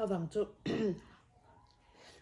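A woman's voice: a few short vocal sounds in the first second, then quiet.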